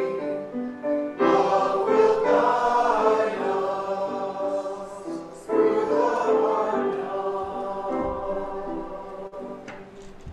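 Congregation singing the final line of a hymn with instrumental accompaniment. A last chord comes in about halfway through and is held, fading away near the end.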